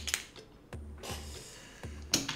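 Online poker client's chip sound effect as a call goes into the pot: a sharp click, then a faint high rattling hiss lasting about a second.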